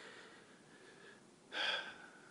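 A man breathing heavily while fighting back tears: a long breath, then a sharp gasping breath in near the end.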